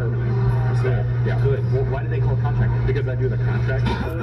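A man talking in a muffled hidden-camera recording, over a loud, steady low hum.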